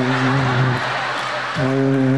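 A man's voice, close to a stage microphone, holding two long, steady sung or hummed notes; the first ends just under a second in and the second starts about a second and a half in. Audience noise runs underneath.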